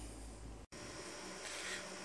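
Faint background room tone with a low hum, cut off by an abrupt edit dropout about two-thirds of a second in, then a faint, different background.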